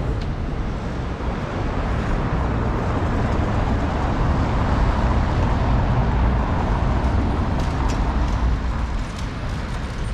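City street traffic: a steady low rumble of cars passing, swelling in the middle as a vehicle goes by.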